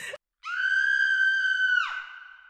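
A woman's high-pitched scream, held steady for about a second and a half, its pitch dropping as it breaks off near the end. A short breathy noise comes just before it.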